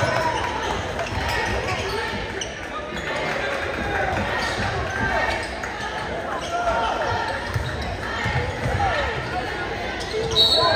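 A basketball dribbled on a hardwood gym floor during live play, under steady crowd chatter echoing in a large gym.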